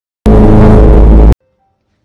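A sudden, extremely loud, heavily distorted and clipped blast of sound lasting about a second, which cuts off abruptly: an 'ear rape' meme sound.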